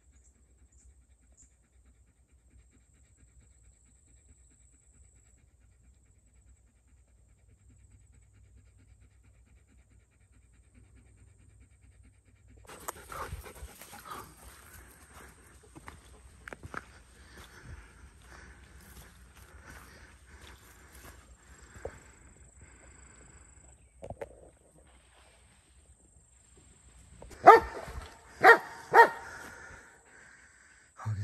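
Belgian Malinois panting while moving along a woodland trail through brush, then three loud barks about half a second apart near the end.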